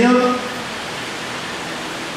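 A man's amplified voice ends a phrase, then a steady, even hiss of background noise fills the pause.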